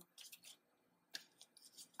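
Near silence: room tone with a few faint, short clicks, the clearest about a second in.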